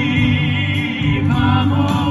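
Male vocal quartet singing live in close harmony: a held chord with vibrato, a higher vocal line coming in about halfway.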